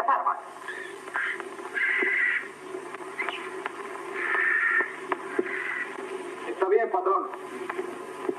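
Voices from an old black-and-white film's soundtrack, thin and hissy with a faint low hum.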